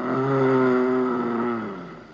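A man's long, wordless moan, hummed with closed lips, held steady for about two seconds and falling in pitch near the end.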